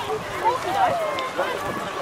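Indistinct background chatter of several people's voices, overlapping, with no clear words.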